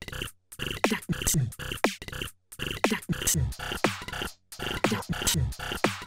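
Teenage Engineering PO-133 Street Fighter pocket operator playing a looped beat, with a punch-in effect held on the pattern. Drum hits with sweeps that drop in pitch and chopped electronic sounds repeat about every two seconds, each pass broken by a short gap of silence.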